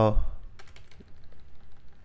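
Computer keyboard keystrokes: a run of light, irregular clicks as text is typed and deleted.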